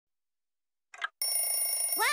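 Alarm clock bell ringing, a cartoon sound effect: a steady ring that starts suddenly about a second in, just after a short, soft sound.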